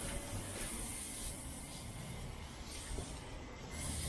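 Steady hiss of a soft-wash spray wand, fed by a 12-volt pump, misting cleaning solution onto a brick wall.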